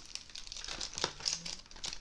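Packaging crinkling and rustling as a small boxed gift is handled, a string of faint scattered crackles.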